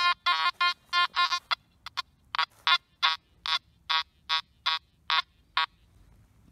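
Nokta Makro Anfibio metal detector's audio tones: about sixteen short beeps as the coil is swept back and forth over a square iron nail lying with a dime. The beeps come in quick runs and then more spaced out, and the pitch of the beeps shifts between sweeps. This is the mixed iron-and-coin response of a dime masked by a nail.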